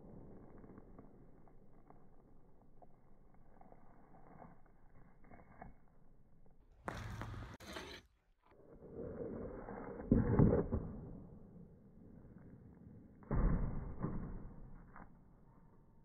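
Hockey snap shots taken off a plastic shooting pad: the puck scrapes across the pad as it is pulled in, then the stick blade strikes with a sharp crack. A second shot cracks out about three seconds after the first.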